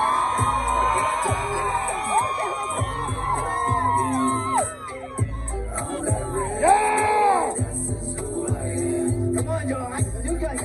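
Live hip-hop beat with heavy bass through outdoor PA speakers, under performers and crowd shouting and whooping. The music drops briefly just before the middle, and a loud held call comes about seven seconds in.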